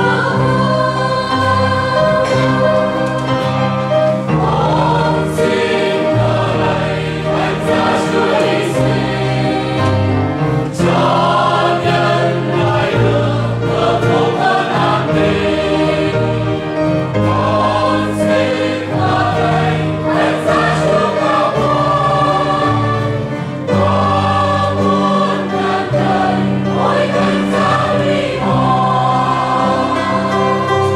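Mixed church choir singing a Vietnamese hymn in harmony, accompanied by piano and guitar.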